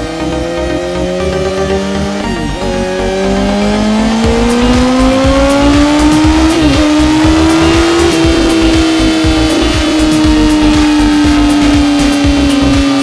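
Suzuki GSX-S1000's inline-four engine revving on a chassis dynamometer through an SC-Project silencer. The pitch climbs steadily, dips briefly at two gear changes about two and six seconds in, peaks, and then slowly falls away near the end.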